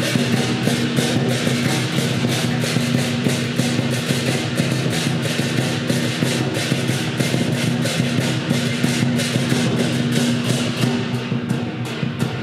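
Traditional lion dance percussion: a large lion dance drum, gong and clashing cymbals playing a fast, driving beat. A steady low ring sounds under the strikes.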